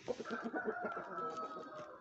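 A hen giving one long, drawn-out call with a fast flutter, its pitch sagging slightly over nearly two seconds.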